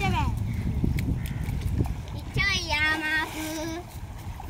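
A person calls out with one long drawn-out shout, starting about two and a half seconds in and lasting over a second, over a low rumbling noise that fills the first half.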